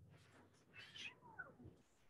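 Near silence: room tone, with one faint, brief high call about a second in that falls in pitch.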